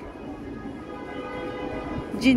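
A steady, sustained tone with many overtones, held unbroken and slowly getting louder.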